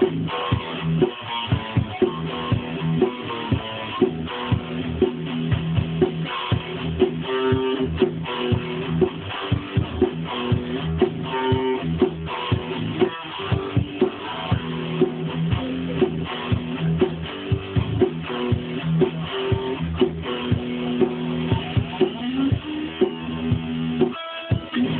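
Stagg guitar played continuously, with picked notes and strums in a steady rhythm.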